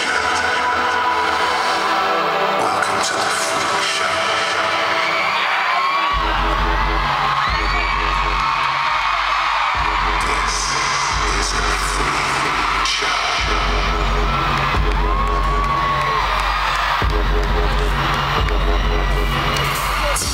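Loud live pop concert music over an arena sound system, heard from the audience: sustained chords at first, then a heavy bass beat coming in about six seconds in.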